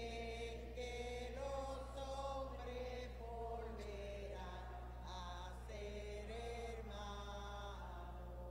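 A sung hymn: a slow melody in long held notes that step up and down, over a steady low electrical hum.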